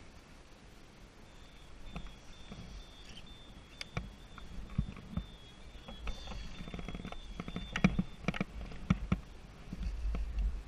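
Skis sliding over packed, groomed snow as the skier gathers speed, with scattered sharp knocks and clicks from the skis, poles and gear. A faint, thin, high-pitched whine comes and goes through the middle.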